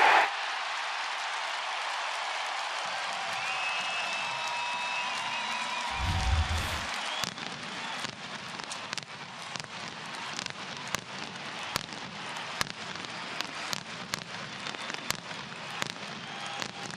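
Ballpark crowd noise as a steady wash, with one deep boom about six seconds in followed by scattered sharp crackling pops, typical of post-game fireworks set off after a home-team win.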